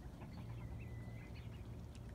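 Faint calls of backyard poultry, with one thin high note held for under a second in the middle, over a low steady hum.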